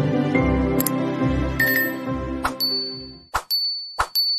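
Background music with a low beat fading out, overlaid with animated end-screen sound effects: sharp clicks, then a high bell-like ding that rings on in the second half as the music dies away.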